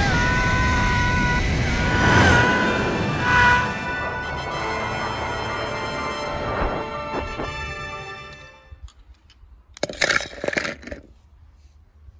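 Cartoon soundtrack: a rocket blast-off with music holding steady notes, fading away over about eight seconds. About ten seconds in comes a short burst of crackling.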